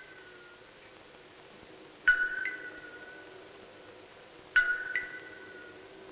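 Sparse film-score music: two pairs of struck, bell-like notes, each pair a lower note followed by a higher one, ringing out slowly over a quiet low drone.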